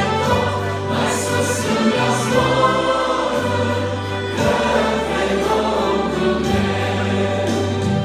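A small group of singers singing a Romanian gospel hymn together, accompanied by accordion and trumpet over held bass notes that change every second or two.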